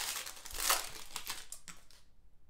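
The foil wrapper of an Obsidian football card pack crinkling and rustling as it is worked open and the cards are pulled out. The rustle is loudest about two-thirds of a second in and fades toward the end.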